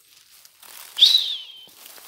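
A single high whistled note about a second in, rising briefly and then sliding down in pitch, over rustling of leaves and brush.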